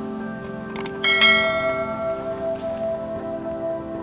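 Subscribe-button sound effect: a short mouse click just before a second in, then a bright bell ding that rings on and slowly fades, over steady background music.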